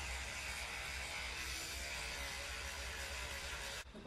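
Teeth being brushed with a toothbrush: a steady hissing noise that starts and cuts off abruptly.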